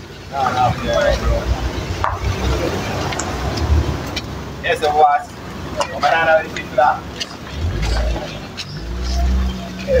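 Voices talking in short, indistinct stretches, with road traffic behind them. A car engine rumbles past near the end.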